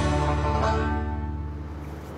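Background music ending on a held chord that fades out over about a second and a half.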